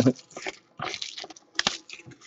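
Plastic shrink-wrap crinkling in short rustles, with a few sharp clicks and light knocks from a cardboard trading-card box handled by hand as it is unwrapped; the sharpest click comes about one and a half seconds in.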